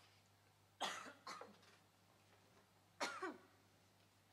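A person coughing and clearing their throat: a double cough about a second in and another near three seconds, the last trailing off with a falling voice.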